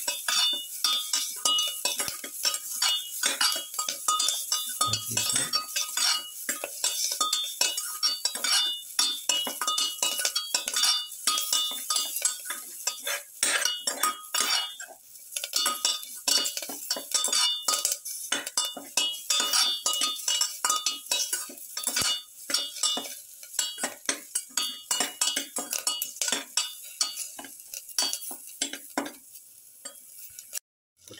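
Steel spatula scraping and clinking against a metal pan in rapid, continuous strokes as vegetables are stirred and sautéed, with a short break about halfway; hot oil sizzles faintly underneath.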